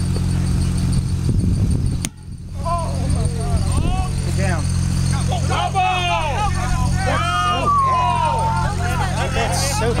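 Several people yelling and calling out across a playing field as a runner heads for base, with one long drawn-out shout near the end, over a steady low hum.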